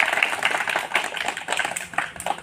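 A small group of people clapping by hand, the claps quick, uneven and scattered rather than in time.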